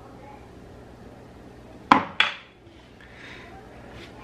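Two sharp clacks, a fraction of a second apart about halfway through, as a plastic measuring spoon is put down on a granite countertop. Otherwise faint room tone.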